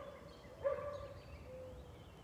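Faint animal calls in the distance: a few drawn-out notes of steady pitch, each about half a second long. The last one, near the end, is quieter.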